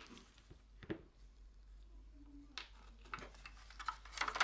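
A few faint, light clicks and knocks as the plastic case and circuit board of a dismantled Fluke 8021B multimeter are picked up and turned over in gloved hands.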